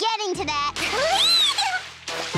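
A high young voice making short wavering sounds, then a splash of water kicked up by a paddling baby dinosaur, with a high squeal rising and falling over the splash.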